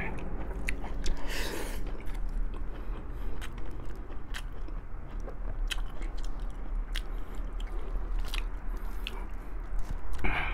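A person chewing boiled pork rib meat close to a clip-on microphone: wet, sticky mouth clicks throughout, with a brief louder hiss about a second and a half in.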